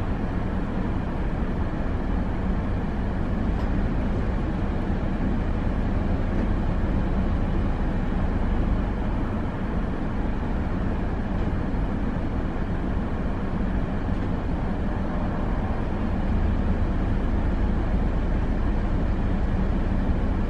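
Idling car engine and heater blower heard from inside the parked cabin: a steady low rumble with a fan-like hiss over it.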